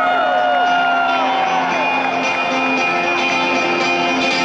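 Live rock band playing held, sustained chords in an arena, with crowd whoops and shouts gliding over the music in the first second or so.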